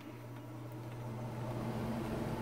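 Air conditioner running: a steady low hum with a hiss that grows gradually louder.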